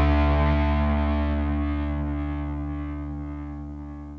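Distorted electric guitar's final chord ringing out and fading away steadily at the end of a punk-rock song.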